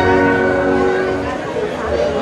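Orchestra with brass holding a sustained chord that fades away about a second in, leaving a lull filled with murmuring voices.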